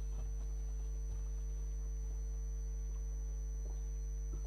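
Steady electrical mains hum on the microphone and PA feed, with a few faint knocks of movement at the podium microphone.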